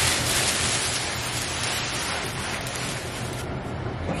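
Plastic protective sheeting rustling and crinkling as it is pulled off a large flat-screen TV. The noise stops shortly before the end.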